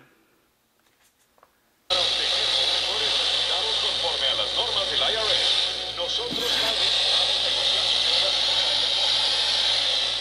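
Casio SY-4000 handheld TV's small speaker playing a broadcast soundtrack buried in loud, steady static hiss: reception is weak. It cuts in suddenly about two seconds in, after near silence.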